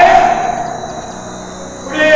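A man's voice over a microphone and public-address system: a loud phrase that rings on in the hall and fades by about a second in, then a new phrase starting near the end. A thin steady high tone sits underneath.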